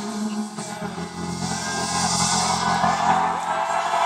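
Live concert music recorded on a phone in the audience: held chords over a steady bass line, with crowd noise growing louder in the second half.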